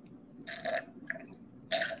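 A man chuckling: two short, breathy bursts of laughter, one about half a second in and one near the end, over a low steady hum.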